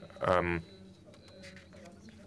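A person's voice: one short voiced sound lasting under half a second, in which no words are recognised, followed by a pause of faint room tone.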